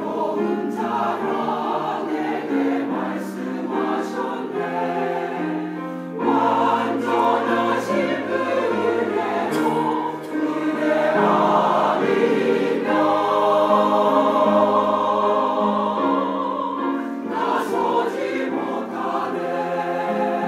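Mixed-voice church choir singing an anthem in harmony, holding long chords; the sound swells louder about six seconds in.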